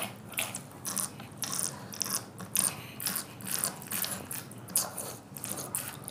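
Pins scratching and picking at thin, hard dalgona sugar candy: a run of small, irregular clicks and scrapes, several a second.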